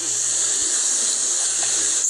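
A steady, even hiss with a faint low hum underneath, and no other event.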